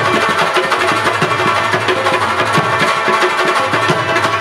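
Rabab played in an instrumental passage with rapid strumming, accompanied by harmonium and tabla.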